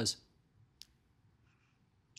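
Near silence after a man's spoken word ends, broken by one faint, short click a little under a second in.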